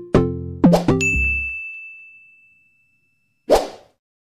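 Outro jingle: a few quick struck musical notes, then a single high ding that rings on and fades for about two and a half seconds. A short whoosh follows near the end.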